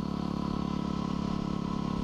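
2010 Yamaha WR250R's single-cylinder four-stroke engine running at a steady, even pitch while the bike is ridden.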